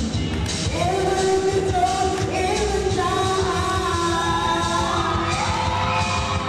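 Singing of a pop-style show tune over music with a steady beat, the sung notes held and gliding between phrases.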